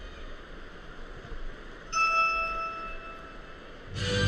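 Low murmur of a large arena crowd. About two seconds in, a single bell-like chime sounds and fades away over a second and a half.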